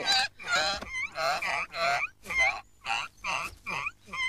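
Pigs squealing in a hungry racket: a run of short, high squeals, about two a second.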